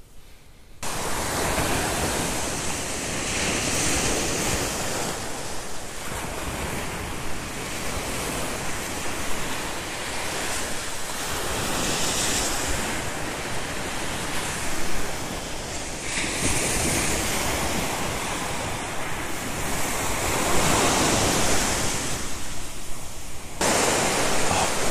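Small ocean waves breaking and washing up a sandy beach, starting about a second in: a steady rush of surf that swells and eases as each wave comes in.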